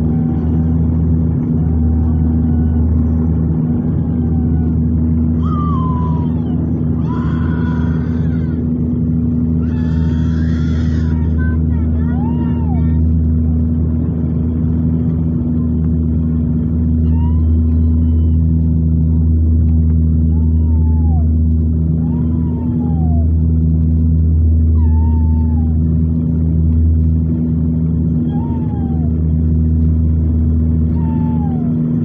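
Turboprop airliner's engine and propeller drone heard inside the cabin during descent: a steady, loud low hum made of several fixed tones. Faint short gliding squeals come every second or two over it.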